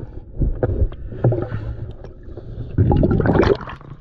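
Water noise heard through an underwater camera housing as it rises and breaks the surface beside a boat hull. There are irregular knocks, and a louder rush of water comes about three seconds in.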